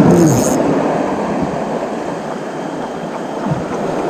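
Steady rushing noise of sea waves washing against a rocky shore, dipping a little in the middle and rising again.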